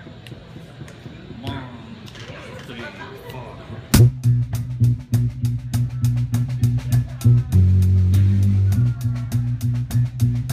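A rock band kicks into a song about four seconds in, with a loud crash on the first beat. Drum kit plays quick, steady cymbal strokes, electric bass holds low notes and electric guitar plays along.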